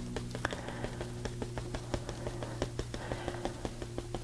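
Marker tip tapping on paper as dots are dabbed onto the page: a quick, irregular series of light taps, several a second, over a steady low hum.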